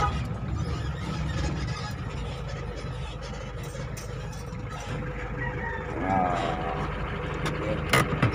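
Engine and road noise of a vehicle heard from inside its cabin as it drives slowly, a steady low rumble with a few light knocks, and a brief voice about six seconds in.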